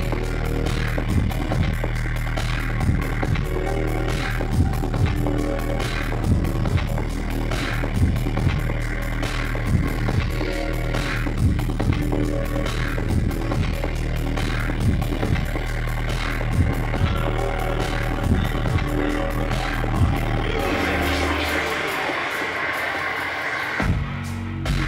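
Dark, deep dubstep played loud over a club sound system, with a heavy sub-bass line under a steady beat. About three seconds before the end the sub-bass cuts out and a brighter, hissy build-up swells in its place.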